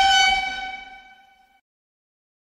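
A horn-like tone held on one pitch, loudest at the start, then fading away and cutting off about a second and a half in.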